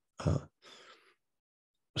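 A man's hesitant "uh", followed by a brief, soft throat clearing.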